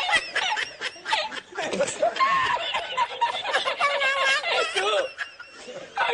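A man laughing hard in repeated high-pitched bursts, broken by bits of speech: the laughing-man meme clip.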